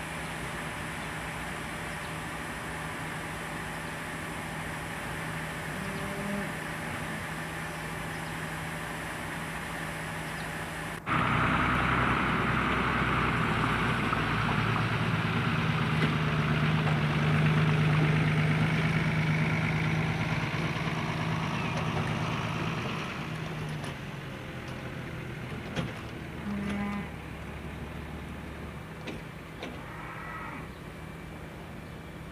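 Fire-engine pump engine running steadily under a hiss of water spray. About a third of the way in the sound jumps louder at a cut, the hiss strongest in the middle and easing near the end, with a couple of short knocks.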